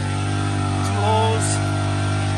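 Small gas engine of an ice auger running at a steady pitch while it drills a hole through the lake ice.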